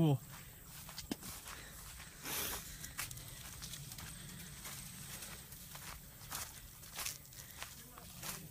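Footsteps through dry leaf litter and brush, with irregular twig cracks and crackles and a brief rustle of brushing vegetation about two and a half seconds in.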